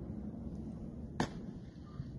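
A single sharp crack about a second in, over a low steady rumble.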